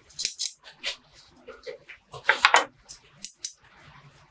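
Steel bonsai scissors clinking and rattling against a wooden tool tray as they are picked up and handled: a scatter of sharp clicks, loudest in a quick cluster about halfway through.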